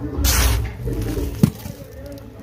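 Sandy cactus substrate being pressed and spread by hand in a terracotta pot: a short gritty rustle in the first half second, then a single sharp click about one and a half seconds in.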